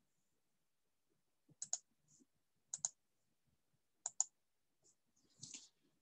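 Computer mouse clicking quietly: three short double clicks about a second apart, with a few fainter ticks.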